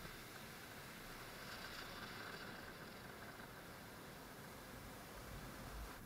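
Faint surf washing onto the beach: a steady, soft hiss of small breaking waves, swelling slightly a couple of seconds in.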